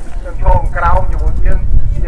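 A man speaking through a microphone and horn loudspeakers, with a steady low rumble of wind buffeting the microphone underneath.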